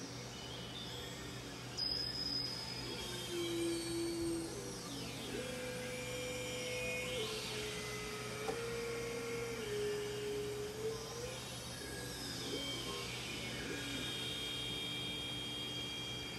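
Synthesizer playing sustained, pure-sounding drone tones that slide up and down in pitch as the pitch wheel is worked, with fainter high tones sweeping up and down above them. A steady low hum runs underneath.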